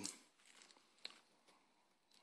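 Near silence: faint hiss, with one faint short click about a second in.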